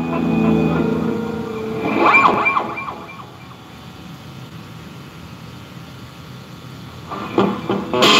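Electric guitar through an amp: a chord rings out, a brief wavering high note sounds about two seconds in, then it goes quiet with a low hum until strummed chords start near the end.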